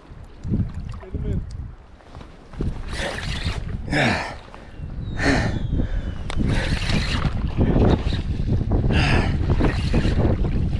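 Wind buffeting the microphone over the wash of surf on the rocks, with several short rushes of water breaking through.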